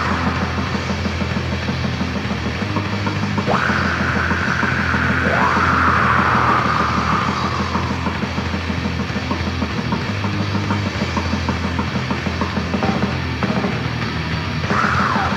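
Raw black metal from a 1999 demo recording: distorted guitars and bass over busy drumming. A long high held line slides in pitch from about four to eight seconds in.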